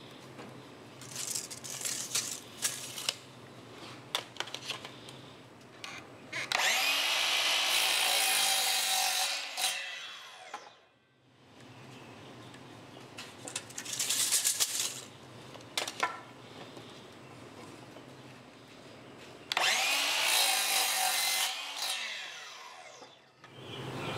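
DeWalt miter saw cutting 2x2 lumber twice. Each time the motor spins up, runs through the cut for about three seconds and winds down. Shorter scrapes and clicks come between the cuts.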